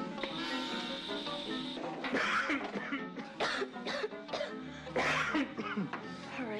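Background drama music with repeated coughing. The coughs come in short bursts from about two seconds in, the loudest near the start of that run and again about five seconds in.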